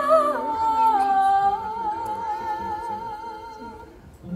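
Stage musical backing music with wordless high singing: a phrase that steps down into one long note with vibrato, fading out near the end.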